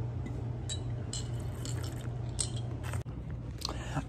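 Faint lip smacks and tongue clicks of a person tasting a soda, a few scattered small clicks over a steady low hum.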